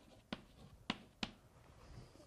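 Chalk writing on a blackboard: a few sharp, separate taps and clicks of the chalk striking the slate, about three in two seconds.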